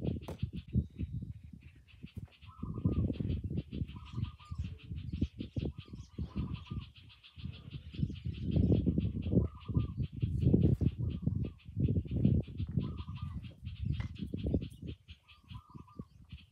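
Rural outdoor ambience: irregular low rumbling gusts of wind on the microphone, a short bird call repeating about every two seconds, and a steady, fast-pulsing high buzz of insects.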